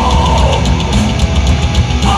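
Thrash metal band playing loud live: distorted electric guitars over fast, driving drums, recorded from within the crowd.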